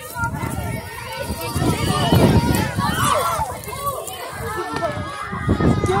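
Children's voices talking and calling out over one another, over a low rumble of footsteps and handling noise from a phone carried while walking.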